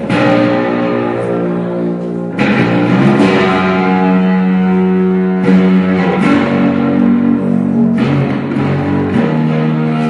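Electric guitar through an amplifier playing an instrumental intro: full chords struck and left to ring, a new chord about every two and a half to three seconds.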